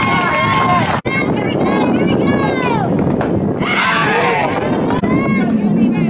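High-pitched girls' voices chanting and shouting, like a softball team's cheers from the dugout, with an abrupt cut about a second in.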